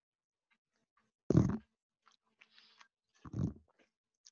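A house cat meowing twice, one short call about a second in and another near the end.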